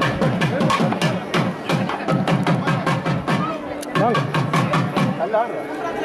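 Thavil drums beaten in a fast, driving rhythm of many strokes a second, the processional drumming of a Tamil temple band.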